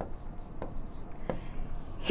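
Marker pen writing a word on a board: soft scratching strokes with a couple of sharp ticks.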